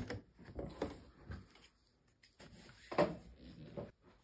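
Scattered handling noises at a sewing machine on a wooden table: quilt fabric pieces being moved and pulled away, with a few light knocks.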